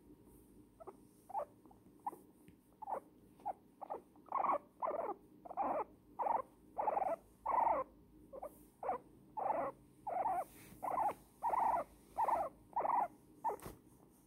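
An elderly guinea pig squeaking while being stroked: a steady series of short, repeated squeaks, about two a second, faint at first and louder and longer from about four seconds in. The owner takes the squeaking for enjoyment of the cuddle.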